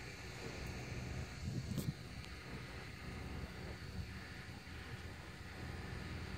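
Quiet outdoor ambience: a low, steady rumble, with a couple of faint, brief sounds about two seconds in.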